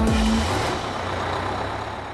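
Cartoon bus engine sound effect as the bus pulls away: a noisy rumble with a low steady hum that gradually fades.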